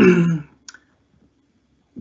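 A man briefly clearing his throat, followed by a single small click.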